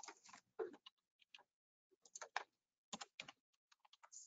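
Faint computer keyboard typing: scattered key clicks in small quick groups as a spreadsheet formula is typed.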